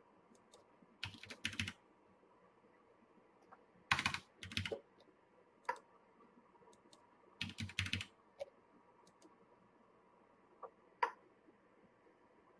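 Computer keyboard keystrokes in three short bursts of quick taps, with a few single clicks between and near the end.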